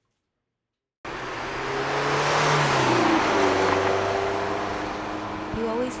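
A car passing: a rush of road and engine noise that cuts in suddenly about a second in, swells to a peak and then slowly fades, with engine tones gliding downward as it goes by.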